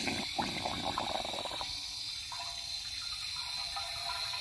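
Water from a garden hose being forced through a small funnel into an old propane tank's open valve, running steadily, filling the tank to push out leftover propane. A little under two seconds in, the sound thins and turns hissier.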